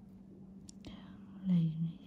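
A brief, soft murmured or whispered utterance from a person, loudest about a second and a half in, over a steady low electrical hum.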